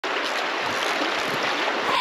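Shallow, stony river flowing: a steady wash of running water.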